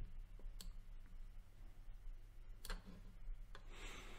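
A few faint, sharp isolated clicks, about two seconds apart, over a low steady electrical hum. A soft hiss comes in near the end.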